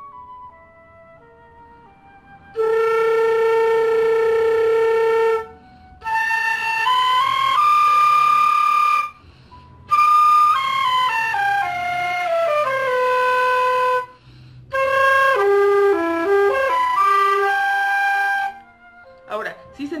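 Transverse flute played with flutter-tonguing (frullato), made by rolling an R with the tongue while blowing: first a long held low note, then a rising run, a falling scale, and a short phrase of several notes. The phrases are separated by brief pauses for breath.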